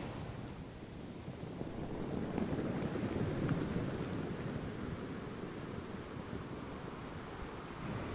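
Coastal ambience: a low, steady rumble of wind buffeting the microphone over faint, distant surf, swelling slightly a couple of seconds in.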